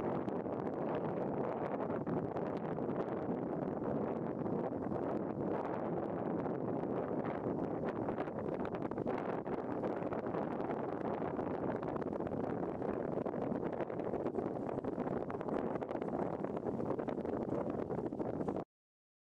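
Steady, even rushing of wind noise with no distinct events.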